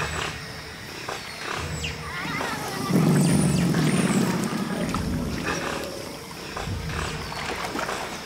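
Giant otters growling and snarling as they attack a caiman, in a harsh, rough chorus that swells loudest about three seconds in for a couple of seconds. Short high chirps come over the top.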